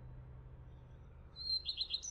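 A faint low hum, then from about one and a half seconds in a bird chirping: a quick run of short high notes, each dropping in pitch.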